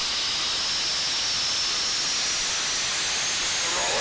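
Steady rushing hiss of airflow and engine noise inside a small aircraft's cockpit, with a faint high whine that slowly rises in pitch as the plane dives to regain airspeed.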